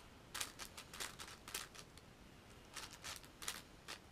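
Plastic layers of a MoYu AoFu WRM 7x7 speedcube clicking as they are turned by hand: two runs of quick clicks with a pause of about a second between them.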